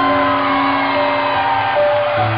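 Live pop ballad played by a band: sustained chords held steady, with one smooth melody line gliding over them that fades out near the end.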